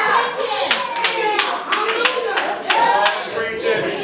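Hand clapping in a church congregation, sharp claps at about three a second for a couple of seconds, with voices calling out over them.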